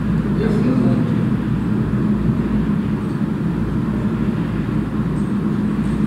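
Steady low hum and rumble of background noise, unchanging throughout.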